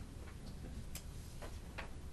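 A few faint, sharp clicks, about four in two seconds, from a phone camera's shutter as a posed group is photographed.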